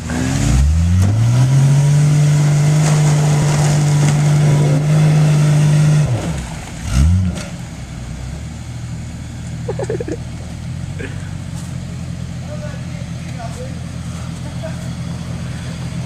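Two-wheel-drive Jeep Cherokee engine revving up and held at high revs for about five seconds under load as it tows a stuck Ford Ranger out of mud on a strap, then dropping off, with one short rev again, and running lower and steady after.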